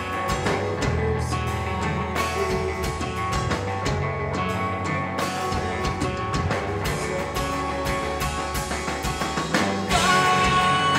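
A live progressive-metal band playing: electric guitars over a drum kit, dense and steady, getting a little louder near the end.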